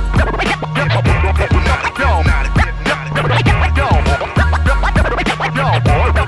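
Turntable scratching: a vinyl record pushed back and forth under the needle in quick, pitch-sweeping scratches, cut in over a steady hip hop beat with a bass line.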